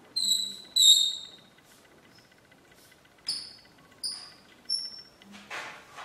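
Chalk squeaking on a blackboard as letters are written: two longer high-pitched squeals in the first second, then three shorter ones between about three and five seconds, with a sharp tap of the chalk at about three seconds.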